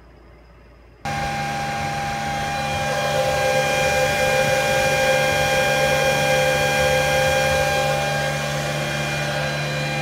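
Antminer Z9 Mini's cooling fans running at high speed with the miner under full hashing load: a loud, steady rushing noise with several steady whining tones. It comes in suddenly about a second in.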